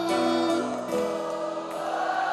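A studio audience singing the 'oh, oh, oh' refrain together in long held notes that step from one pitch to the next, with the band playing along.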